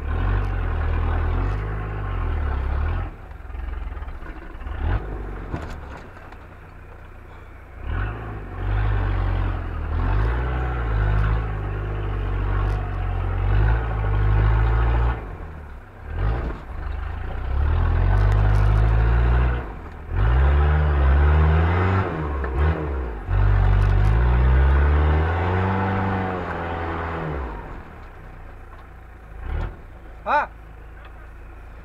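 Off-road 4x4's engine revving in repeated bursts under load as the vehicle climbs a steep rock section, the pitch rising and falling and dropping back briefly several times. The longest, loudest bursts come in the second half.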